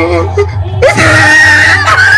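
A person lets out a loud, held scream about a second in, lasting about a second, over music with a heavy bass from loudspeakers.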